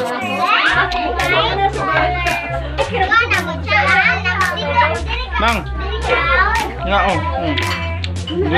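Many children's excited, high-pitched voices calling out together over dance music with a heavy bass and a steady beat of about two strikes a second.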